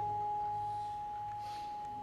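A single bronze gamelan note ringing on and slowly fading after the ensemble stops playing.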